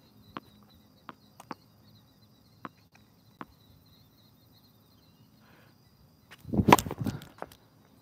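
Tennis ball bounced a handful of times on a hard court in the first few seconds, then a loud serve near the end: the racket strings striking the ball.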